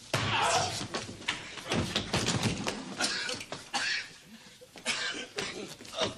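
A scuffle between men: grunting and strained cries as they grapple, with repeated thumps and knocks, loudest right at the start.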